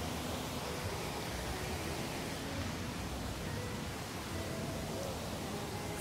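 Steady, even rush of a small waterfall splashing down over rocks.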